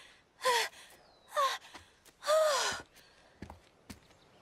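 A young woman's voice giving three short, breathy gasps of effort, each falling in pitch, as she strains to climb a steep rock slope. A few faint clicks follow near the end.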